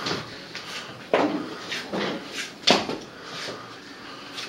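A handful of short knocks and clatters, about six in four seconds, from things being handled; the loudest come a little after one second and just before three seconds.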